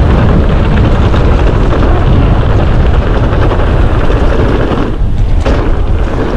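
Loud, steady rumble of a mountain bike descending a downhill trail at speed: wind buffeting the helmet or chest camera's microphone, with tyres and frame rattling over the rough surface. The rumble eases briefly near the end.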